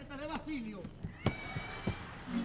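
A man's wordless vocal sound with a strongly wavering, quavering pitch, ending about a third of the way in, followed by two sharp knocks a little over half a second apart.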